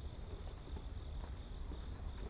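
Insects chirping in a steady, even rhythm of short high chirps, about four a second, over a low rumble.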